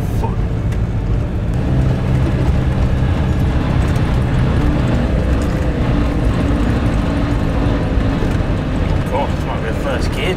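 Inside the cab of a 2002 Iveco Daily van on the move: its diesel engine running steadily under a dense rumble of tyres on a rough lane.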